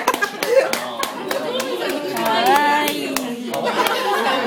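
Scattered hand clapping from a small audience, irregular claps, with voices talking over it.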